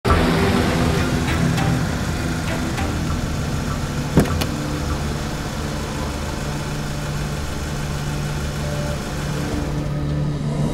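A car engine running under a dramatic music score, with several sharp clicks, the loudest about four seconds in.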